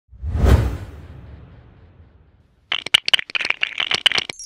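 Animated logo sound effects: a whoosh ending in a low thump about half a second in that fades away, then, after a short gap, a fast run of clicks and rattles.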